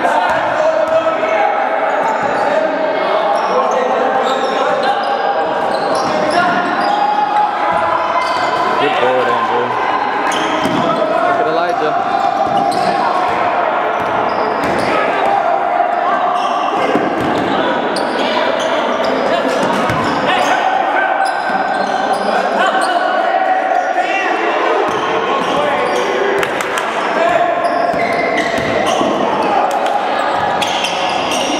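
Basketball being dribbled and bounced on a hardwood gym floor during live play, amid continuous shouting and chatter from players and spectators, echoing in the large gym.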